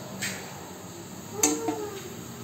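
Light knocks of a plastic spatula against a metal steamer pot as steamed rice-flour dough balls are lifted out: a soft one at the start and a sharper one about a second and a half in.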